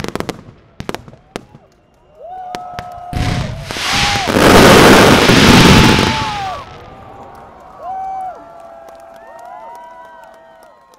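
Consumer fireworks: a few scattered cracks, then a loud rushing hiss of a big white spark burst. The hiss builds from about two seconds in, peaks for about two seconds and dies away by about seven seconds in. Spectators whoop through it and more often toward the end.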